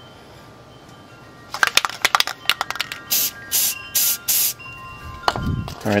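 Aerosol can of anti-rust spray paint being used: a brief clatter of clicks about a second and a half in, then four short hissing sprays about half a second apart.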